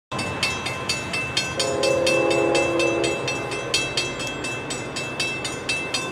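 Railroad crossing bell ringing steadily at about four strokes a second as the crossing is activated. A distant locomotive horn sounds one held chord from about one and a half seconds in until about three seconds.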